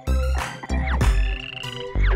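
Cartoon frog croaking sound effects over the bouncy backing music of a children's song, which has a steady beat.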